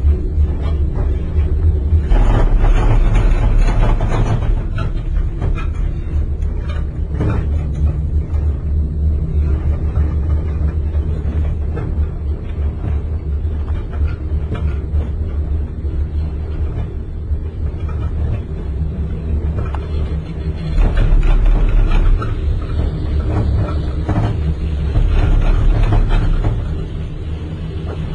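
Steady low rumble and hum of a moving gondola cabin, with a louder rush of noise that swells a few times, about two seconds in, and twice near the end.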